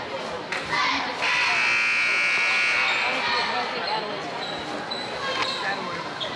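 Gym scoreboard buzzer sounding one steady, flat-pitched blast of about two seconds, marking the end of a timeout.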